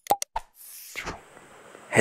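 Animated subscribe-button sound effects: a short pop with a quick downward pitch drop and a click, then a brief high hiss that fades.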